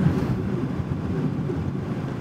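Steady low road and engine rumble inside the cabin of a car driving slowly.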